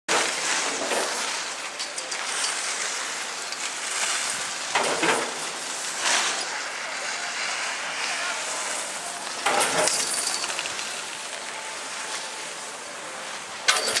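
Skis scraping and hissing over packed snow on a ski slope, a steady hiss with a few louder swells, mixed with indistinct voices. A sharp knock sounds just before the end.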